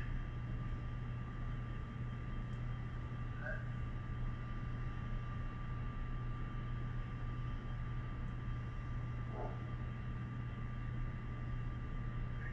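Steady low hum and hiss with a thin, constant high tone above it, broken only by a few faint short sounds. This is the background of a played-back recording coming through the room's sound system before any voices start.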